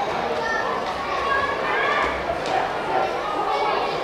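Many voices talking and calling at once, children's voices among them, as a steady babble of chatter with no single clear speaker.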